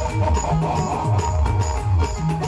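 Loud band music from a truck-mounted loudspeaker stack: a heavy bass line under a fast, steady drum beat of about four hits a second.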